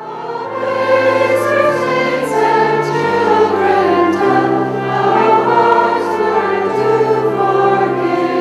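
Church congregation singing a hymn together over long held bass notes that change every second or two. It cuts in abruptly at full volume.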